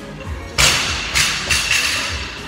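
A barbell loaded with rubber bumper plates is dropped from overhead onto a rubber gym floor. It lands with a loud thud about half a second in, then bounces with two smaller impacts. Background music plays throughout.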